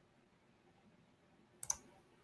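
Near silence, then two quick clicks close together near the end, the second louder: clicking on a computer to share the live stream.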